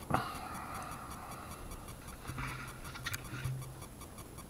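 Camera handling noise as the camera is turned round: a sharp click at the start, faint rustling, then a brief low hum with another click about three seconds in.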